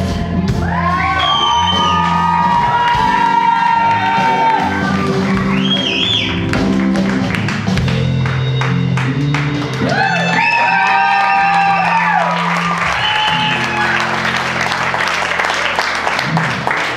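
Live band with a female lead singer holding long notes with vibrato over electric guitar and drums in the song's closing bars. Audience applause and cheering rise over the last few seconds.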